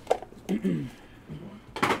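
Cardboard trading-card box being handled: a few sharp clicks near the start and a brief crackle of packaging near the end, with a short murmur of voice between.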